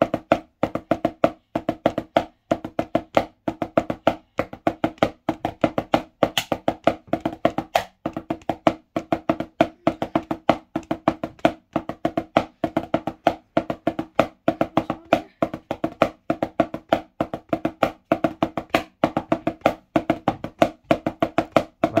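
Drumsticks on a drum practice pad playing five-stroke rolls over and over: short bursts of quick, even taps separated by brief gaps, repeating steadily.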